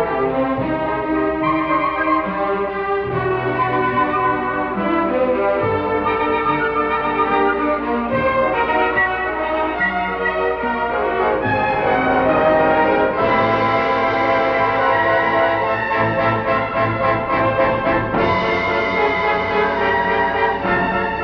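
Orchestral film score music with brass to the fore, sustained notes over a full orchestra. The texture grows busier about halfway through and brighter near the end.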